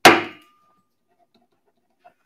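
An auctioneer's gavel strikes the rostrum once: a single sharp knock with a brief ringing tail. It knocks the lot down as sold.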